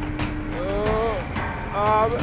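Ginetta G56 GTA race car's V6 engine running hard over a steady drone, its pitch rising and falling twice as it revs.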